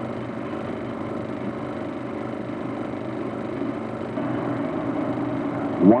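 Steady running sound of a freight train of coal hopper cars rolling past, with a constant low hum underneath; it grows slightly louder about four seconds in.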